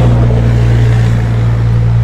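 Vehicle engine idling close by: a steady, loud low hum.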